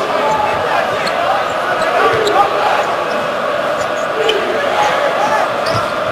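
Basketball arena crowd noise during live play: a steady mass of spectator voices, with a basketball dribbling on the hardwood court and scattered short ticks from the game.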